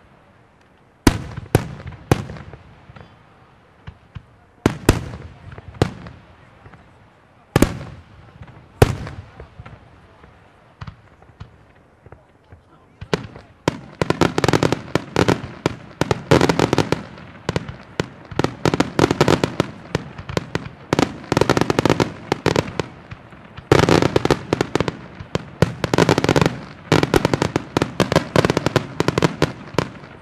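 F.lli Di Ponio aerial firework shells bursting: a handful of separate loud bangs, each echoing away, then from about halfway a dense run of rapid bangs and crackle that keeps going.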